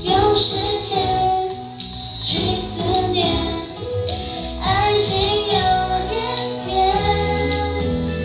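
A Mandarin pop love song: female voices singing over a musical backing track, continuous throughout.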